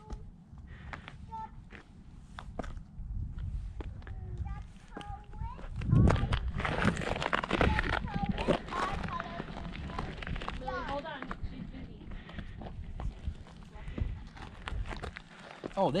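Scuffing and scraping of a climber's hands and shoes on granite boulders, over a low rumble of handling noise on a body-worn action camera, with a louder stretch of rubbing noise about six seconds in. Faint, indistinct voices come and go.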